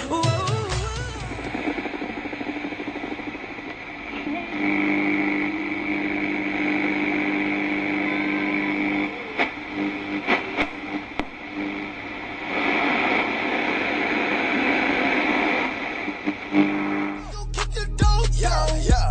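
Music cuts off within the first two seconds. Then comes outdoor background noise with a steady low hum that holds for several seconds twice, and a few sharp clicks in the middle.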